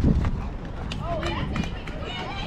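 Several people yelling and calling out at once during a softball play, starting about a second in, with a thud at the very start and a couple of sharp clicks.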